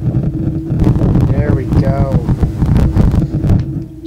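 Cell phone radio interference picked up by a vintage C1 Library of Congress cassette player, which is not properly EMI shielded. It comes out as a loud, rapid buzzing chatter full of pops that stops at the end.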